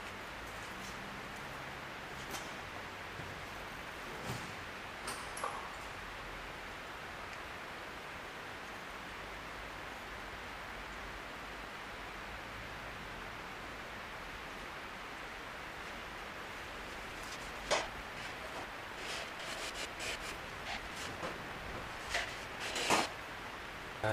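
Steady hiss with scattered light clicks and taps of an aluminium engine cover and plastic fuel-pump hoses being handled on a workbench. The clicks come thicker in the last several seconds.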